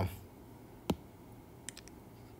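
A single sharp click about a second in, then a quick run of three or four faint ticks near the end.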